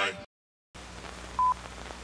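Film countdown leader beep: a single short, steady high tone about one and a half seconds in, over a faint low hum. Just before it, the end of the theme music cuts off into a moment of dead silence.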